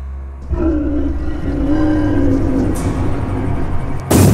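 Monster-movie dinosaur roar sound effect: a long, low, wavering roar over a deep rumble, starting about half a second in.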